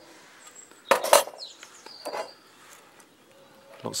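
Small metal toy parts clinking as they are handled: two sharp clinks close together about a second in, then a few fainter knocks. Faint bird chirps in the background.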